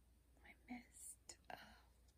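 Faint whispering, a few soft broken syllables, with a couple of light clicks from a plastic spray bottle being handled.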